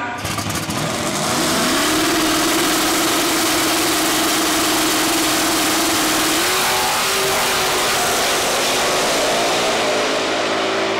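Two small-tire drag cars' engines, one a Fox-body Mustang, revving up and held at a steady high pitch on the starting line, then stepping up in pitch about six and a half seconds in as they launch at full throttle down the drag strip.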